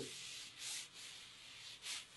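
A quiet room with two faint, short soft hisses, about a second apart.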